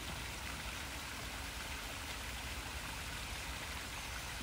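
Small garden-pond waterfall splashing into the pool, a steady even rush of falling water.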